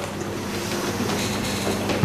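Steady background noise with a low electrical hum in a pause between spoken sentences: the hiss and mains hum of an old video recording of a room.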